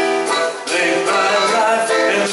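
Live band playing a mid-tempo song, with strummed acoustic and electric guitars, in a short stretch without lead vocal.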